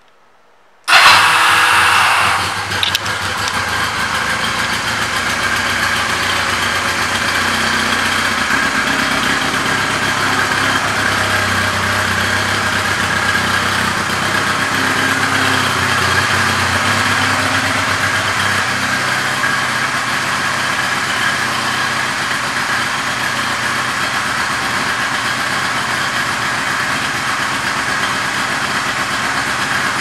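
1999 Honda Rebel 250's air-cooled parallel-twin engine starting about a second in, loudest for the first moment as it catches, then idling steadily.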